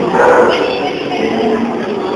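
Jaguar cubs calling, with people's voices alongside.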